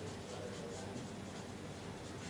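Felt-tip marker writing on a whiteboard: a quick run of faint, scratchy pen strokes as a word is written.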